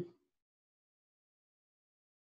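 Near silence: a dead pause between spoken phrases, with no sound at all.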